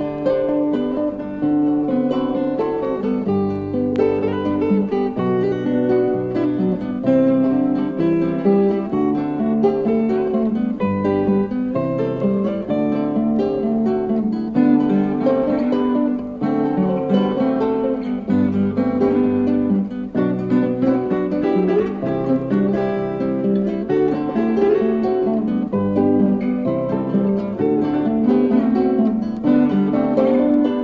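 Instrumental folk music without singing: acoustic guitars picking and strumming, with bass notes underneath.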